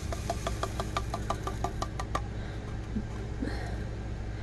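Plastic diamond-painting tray with loose resin drills being handled: a quick run of small clicks and taps, about six a second, for the first two seconds, then a few scattered clicks.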